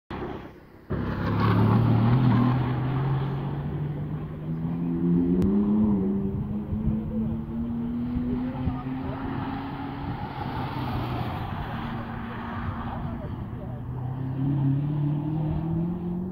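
Performance car engines passing trackside on a racing circuit, with a short gap under a second in. The engine note climbs in pitch as a car accelerates, holds steady for a few seconds, and climbs again near the end.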